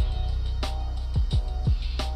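Background music with a beat: deep kick-drum hits that drop quickly in pitch, a sustained low bass line and occasional sharp snare hits.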